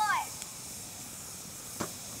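Wood fire burning with a steady hiss and one sharp crackle near the end.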